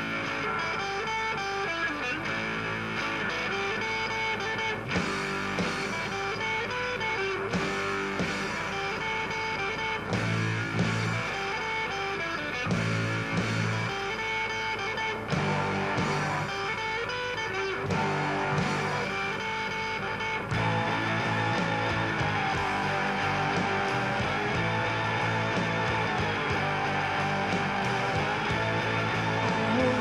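Rock band playing the instrumental opening of a song live, with strummed electric guitars, bass and drums. It gets louder about two-thirds of the way in.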